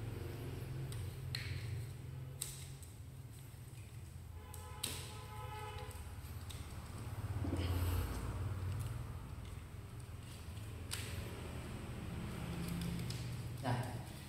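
Scattered light clicks and knocks of white PVC pipe sections and plastic fittings being handled and fitted together, over a steady low hum.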